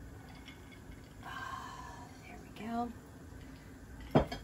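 Faint sound of the thin egg-and-cream eggnog base being poured from a glass bowl into a saucepan, with light drips.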